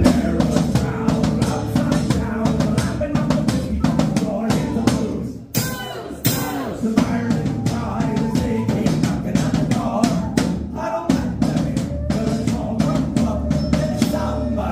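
A Celtic rock band playing live: a drum kit with bass drum and snare drives the beat under bagpipes. There is a short break about five and a half seconds in, then the full band comes back in.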